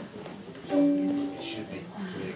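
A single ukulele chord strummed about two-thirds of a second in, ringing briefly and fading, over low talk in the room.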